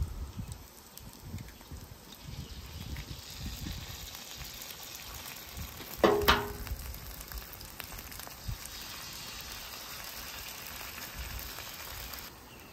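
Eggs sizzling steadily as they fry in butter on a flat-top griddle, with a few soft handling thumps in the first seconds. A single brief, loud pitched sound stands out about six seconds in.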